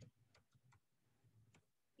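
Near silence, with three faint, short clicks from a computer keyboard as a number is typed and entered into a spreadsheet cell.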